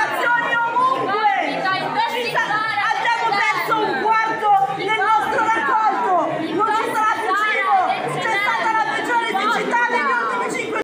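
Speech: a woman speaking in Italian over the chatter of other voices.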